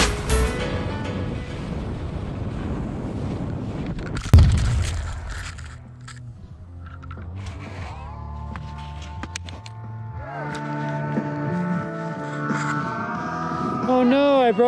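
Skis running fast over packed spring snow with wind rushing on the camera, then a single hard thump about four seconds in as the skier crashes into the snow, followed by quieter sliding and scraping.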